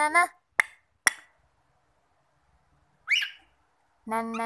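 Cockatiel giving a single short chirp that slides upward in pitch about three seconds in. Two brief sharp clicks come about a second in, and a person's sung note cuts off just at the start.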